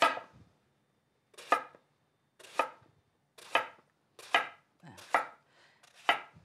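Chef's knife slicing a partly peeled eggplant into rounds, each cut ending in a knock on the wooden cutting board: six cuts about a second apart, coming a little quicker toward the end.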